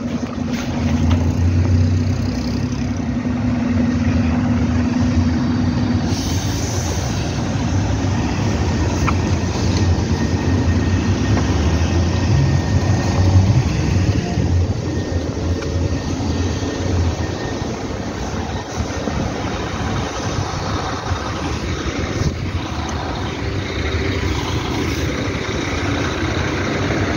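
Higer KLQ6129Q2 city bus standing with its engine idling: a steady low hum. About six seconds in, a steady higher drone stops and a hiss takes over alongside the engine.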